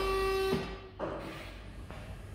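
An electric pallet stacker gives out a loud tone that falls in pitch, holds steady and cuts off about half a second in. A short knock follows about a second in.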